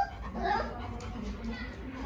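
Labrador puppy whimpering: two short, rising squeaks, one at the very start and another about half a second in.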